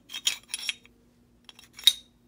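Steel pistol barrel and slide handled together as the barrel is fitted in from the front: a few light metal clicks and scrapes in the first second, then one sharp metallic click near the end.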